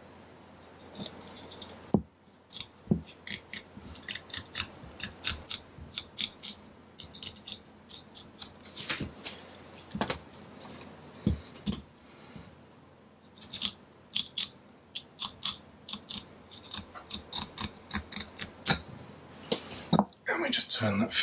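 Deba knife cutting along a cutlassfish's dorsal fin on a wooden chopping board, the blade crunching through the small bones attached to the fin in an irregular run of short clicks. There is one louder knock about two seconds in.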